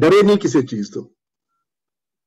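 A person's voice speaking over a video call for about a second, then cut off into silence.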